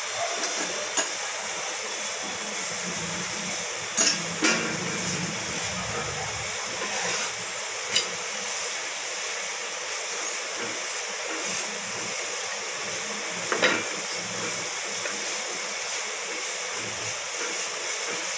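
Oil sizzling steadily under a chapathi frying in a nonstick pan, with a few short knocks of a wooden spatula against the pan.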